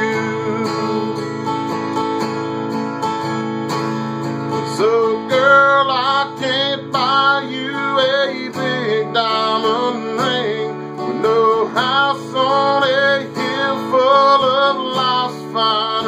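Acoustic guitar strummed in a slow country song, with a man's singing voice coming in about five seconds in over the chords.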